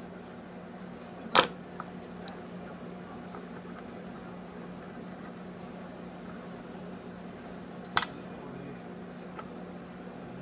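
Two sharp snips about six and a half seconds apart, over a steady low hum: flush cutters clipping the ends of 20-gauge Kanthal coil wire.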